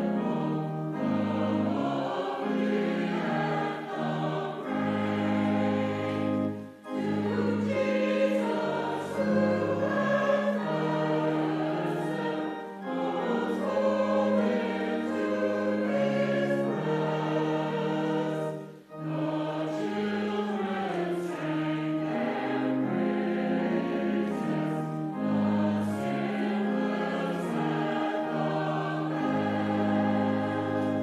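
Mixed church choir of men and women singing in parts, with sustained notes and two brief breaks between phrases about 7 and 19 seconds in.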